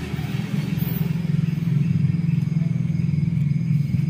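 A small engine running steadily, an even low hum that neither rises nor falls.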